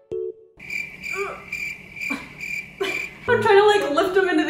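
A comedic crickets sound effect: a steady high chirping that pulses about twice a second. It comes after a couple of light clinks of a metal spoon against a ceramic bowl at the start, and a woman's voice comes in near the end.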